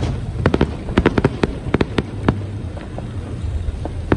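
Fireworks display: aerial shells bursting with sharp cracks and bangs, a rapid string of them between about half a second and two seconds in, then scattered bangs, over a low steady rumble.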